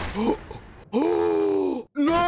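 A voice lets out a drawn-out groan about a second in. It is held on one pitch, then drops and breaks off abruptly, after a short breathy rush at the start.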